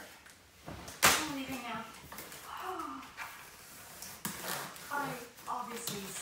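Talking in a small room, with one sharp slap about a second in that is the loudest sound: a flat white plastic EZ Nuc panel being set down on a wooden coffee table. A few lighter knocks follow as the panel is handled.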